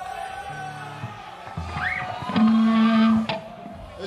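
Music: sustained electric guitar notes with a brief rising glide, then a long held low note in the second half.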